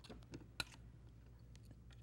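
A few faint clicks and taps, the loudest just over half a second in, as a polymer clay cane is cut in half on a work board and the pieces handled.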